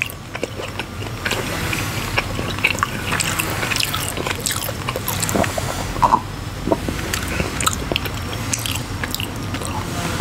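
Close-miked chewing of teriyaki turkey jerky: irregular wet mouth clicks, smacks and crackles going on without a pause.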